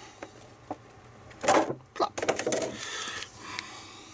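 Stiff clear plastic blister packaging crinkling and clicking as it is pressed and handled by hand, with a sharp click about two seconds in.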